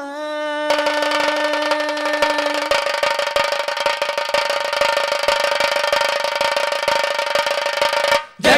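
Ghumat aarti ensemble playing between verses: a steady held drone note runs under a fast, dense beat of ghumat clay-pot drums and cymbals, which comes in under a second in.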